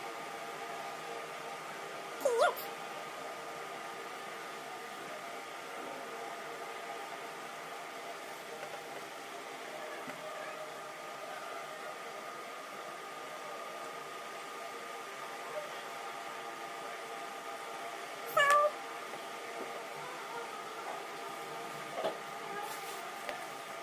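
Two short, high animal calls, each a single quick pitch glide: one about two seconds in and one near the end.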